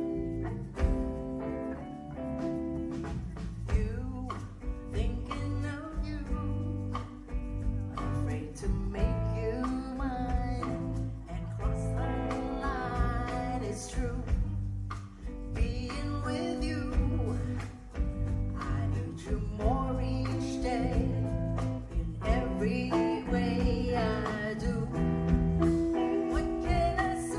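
Live rock band playing a slow ballad: electric guitar, bass and drums, with a woman singing over them.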